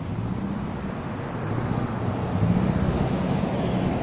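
Road traffic: a steady engine hum and tyre noise that grows gradually louder as a vehicle draws nearer.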